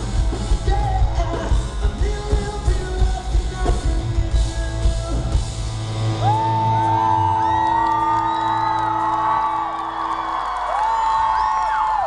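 Live rock band playing with drums, bass and electric guitar; about six seconds in the song ends, a held note rings on briefly, and the crowd breaks into screaming and cheering.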